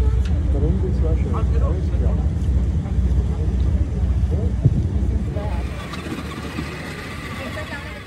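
Outdoor ambience dominated by a loud, uneven low rumble of wind buffeting the phone's microphone, with people's voices mixed in. The rumble and voices die down about two thirds of the way through, leaving a fainter hiss.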